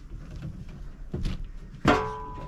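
Handling knocks from refuelling a kerosene heater with a hand siphon pump: a dull thunk a little over a second in, then a sharper, louder knock near the end followed by a brief ringing tone.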